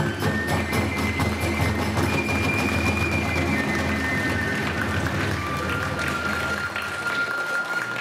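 Iwami kagura hayashi: a bamboo transverse flute plays long held notes over steady drum beats and hand cymbals. The low drum part drops out near the end.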